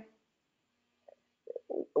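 A pause in speech: near silence for about a second, then a few faint, short voice sounds from a woman hesitating, just before she starts talking again.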